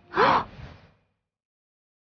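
A woman's short, sharp gasp, with a brief rise in pitch, fading within about a second.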